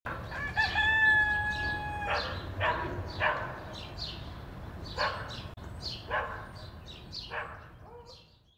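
Rooster crowing, one long held call of about a second and a half, followed by a run of shorter sweeping calls.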